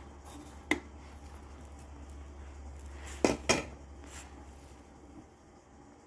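Kitchen utensils clinking against a stainless steel pot as salt is added to seasoned meat: one sharp click under a second in, then two quick, louder knocks a little past halfway, over a low steady hum.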